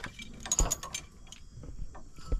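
A cluster of metallic clinks and light chain jangling about half a second in, then a few fainter ticks, from hands working at a trailer tongue jack beside hanging steel safety chains.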